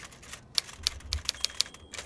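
Typewriter sound effect: a quick, irregular run of about ten key strikes.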